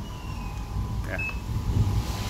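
TESCOM foot massager running: its motor and rollers make a steady low hum that grows a little stronger near the end.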